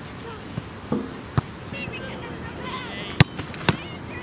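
Soccer ball struck hard several times in goalkeeper shot-stopping, kicks and saves: a sharp thud about one and a half seconds in, then the loudest about three seconds in and another half a second later, with a few softer knocks before them.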